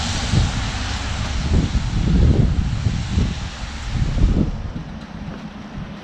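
Wind buffeting the camera microphone: a loud hiss with irregular low rumbling gusts, easing off near the end.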